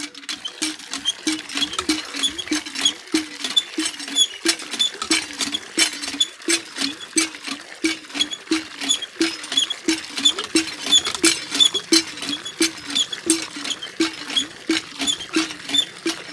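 Hand pump (nalka) being worked steadily, about two strokes a second. Each stroke gives a short creaking squeak from the mechanism as water splashes out of the spout.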